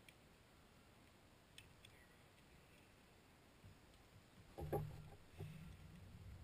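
Near silence with a few faint clicks, then a short knock and a low rumble about four and a half seconds in.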